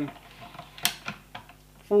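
Alloy bolt of a Wells MB08 spring bolt-action gel blaster being lifted and drawn back: a few light mechanical clicks, the sharpest about a second in.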